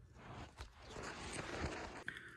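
Faint handling noise of a phone being turned around: soft rustling with a couple of light clicks.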